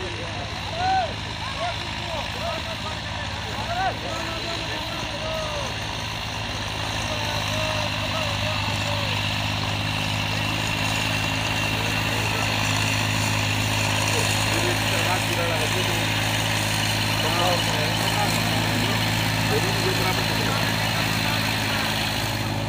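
Diesel tractor engine running steadily under load while pulling a harrow through tilled soil, its hum growing louder from about a third of the way in as the tractor comes nearer.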